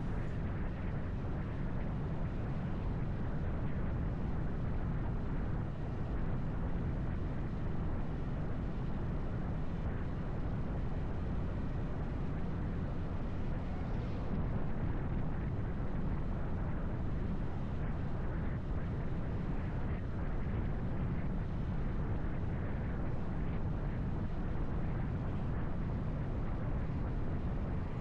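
Steady wind rush and road noise on a motorcycle-mounted camera while riding at speed, a low even rumble that holds level throughout with no distinct engine note standing out.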